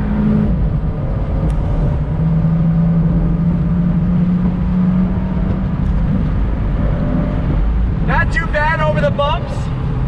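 Fiat 124 Spider Abarth's 1.4-litre turbocharged inline-four running at a steady cruise, heard from the open cockpit with the top down over a low rumble of road noise. A voice cuts in near the end.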